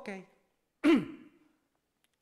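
A man's voice: the end of a spoken "Ok", then about a second in a short, breathy vocal sound like a sigh, its pitch falling steadily.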